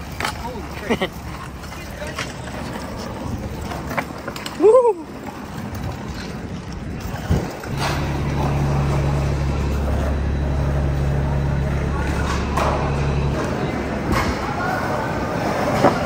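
Skateboard and scooter wheels rolling over concrete pavement, with a city bus's diesel engine running steadily close by for about five seconds in the middle before it cuts out. A short, loud voice call rises and falls in pitch about five seconds in.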